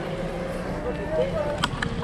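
Steady wind and road rumble on a camera riding along on a bicycle over a concrete road, with two or three sharp clicks about a second and a half in.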